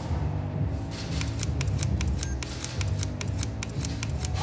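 Rapid, overlapping camera shutter clicks from several cameras firing at once, thick from about a second in, with a steady low rumble underneath.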